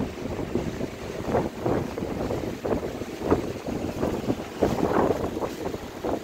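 Low rumbling noise on a handheld phone microphone, with faint, muffled, indistinct voices of the shop behind it.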